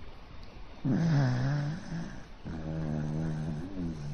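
A dog snoring in its sleep while lying on its back: two long, pitched snores, the first about a second in and the second from about two and a half seconds.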